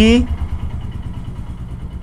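A low, evenly pulsing engine rumble, like an engine idling, fading out toward the end, after the tail of a spoken word at the very start.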